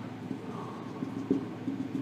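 Felt-tip marker dabbing and sliding on a whiteboard, short strokes of a dashed line, a few brief taps and scratches over a low room hum.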